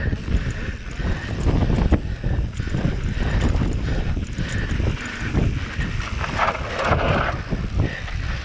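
Electric mountain bike ridden along a dirt singletrack: wind buffeting the microphone, tyres rolling over dirt and loose stones, and knocks and rattles from the bike over bumps. A louder scraping hiss comes about six and a half seconds in.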